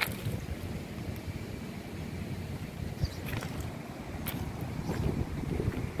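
Steady low rumble of wind buffeting the microphone outdoors, with a few faint clicks.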